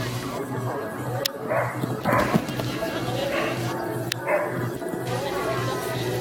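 A dog barking a few short times, over crowd chatter and background music.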